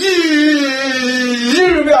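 A man's voice holding one long drawn-out vowel for about a second and a half, its pitch sinking slightly, then lifting into a short word near the end.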